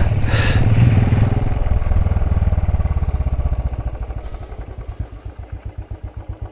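Royal Enfield single-cylinder motorcycle engine coming off the throttle: its note dies down over the first few seconds and settles into an even, thudding idle.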